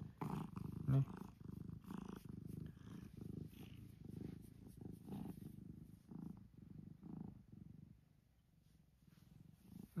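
Domestic cat purring while being stroked, a soft steady purr pulsing about twice a second with each breath. It fades out about eight seconds in and starts again near the end.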